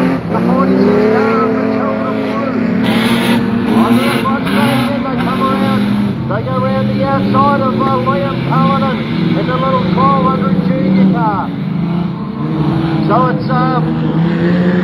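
Several dirt-track speedway sedans running laps together, their engines droning continuously with the pitch rising and falling as they go through the turns and down the straights.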